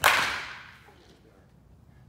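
A baseball bat striking a ball: one sharp crack that rings and fades over about half a second in the indoor batting cage.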